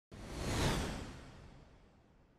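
A whoosh sound effect: one rushing swell of noise that starts suddenly, peaks within about half a second, then fades away slowly.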